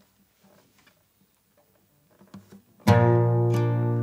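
Faint room sounds, then about three seconds in a guitar chord is strummed and rings on, the first chord of the song.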